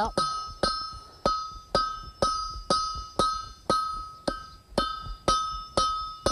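Hand hammer striking a hot iron spike on an anvil in a steady rhythm, about two blows a second, drawing the spike out. Each blow rings with a clear metallic tone that fades before the next.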